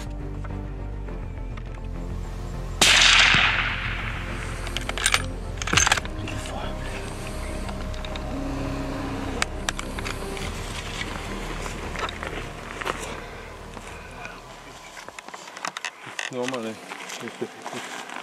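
A single rifle shot about three seconds in, the loudest sound, with a short echoing tail, followed a couple of seconds later by two sharp clicks. Background music runs underneath and fades out near the end.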